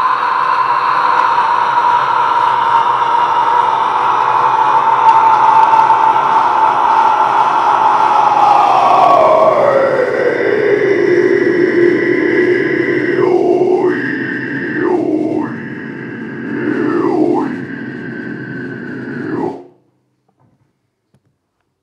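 One long, unbroken extreme-metal vocal scream into a handheld microphone, held for about twenty seconds. About halfway through, its pitch slides down into a lower register, with the mic cupped at the mouth. Near the end the tone dips and shifts a few times before the scream cuts off suddenly.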